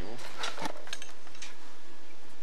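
Light handling clicks and clatter over a steady hiss, with a low hum coming in about halfway through.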